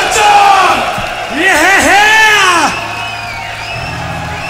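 A man's wordless yell through the PA, rising and falling in pitch for about a second and a half near the middle, over a cheering rock concert crowd, right after a heavy metal song ends.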